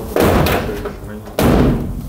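A GAZ-69's steel side door slammed shut twice, about a second and a quarter apart, each a sharp bang that dies away quickly.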